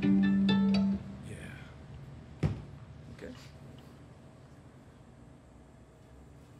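A fiddle bow drawn on a low string, one steady note held about a second and stopped short, with a few plucked guitar notes over it as the band readies the next song. A single sharp knock follows about two and a half seconds in, then quiet room sound.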